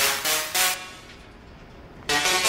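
Musical Tesla coils: the electric sparks sound buzzy, pitched notes in a few short pulses. The sound then fades to a faint hum after about a second.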